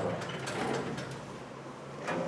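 Chalk scraping and tapping on a blackboard as a formula is written, in short scratchy strokes that die away in the second half.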